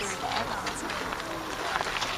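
Indistinct voices of people talking, too unclear to make out words, with a few faint clicks.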